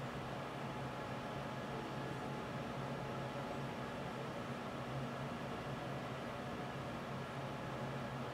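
Steady low hiss with a faint, unchanging hum underneath: background room noise, with no distinct sound from the hands coiling the soft clay.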